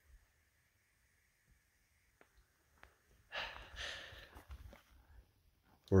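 Near silence, then about three seconds in a person's breathy vocal noise lasting under two seconds: a hiker further up the trail making noises.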